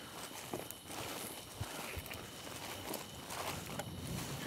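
Footsteps of people walking through a grassy field, soft irregular steps with grass rustling.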